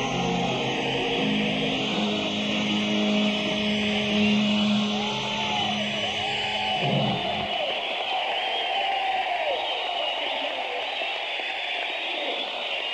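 A rock band playing live, heard on an audience tape, ends with a held chord about seven seconds in. It gives way to the crowd cheering and whooping.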